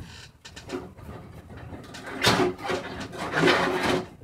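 Shuffling and rubbing handling noises, loudest in the second half, with a short steady squeak near the end, made by someone reaching out of view to fetch an object.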